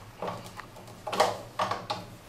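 Bolt of a Gerät 03 prototype roller-locked rifle being slid back by hand: short metal sliding noises and a few clicks, the sharpest about a second in.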